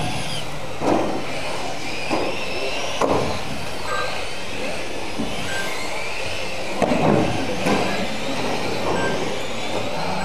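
Several radio-controlled mini racing cars running on a carpet track, their electric motors whining in pitch that rises and falls as they speed up and slow for corners, over a steady hiss of tyres and drivetrains. A few sharp knocks come through, about a second in, at three seconds and twice near seven to eight seconds.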